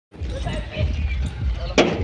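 Voices over a steady low rumble, with one sharp knock just before the end.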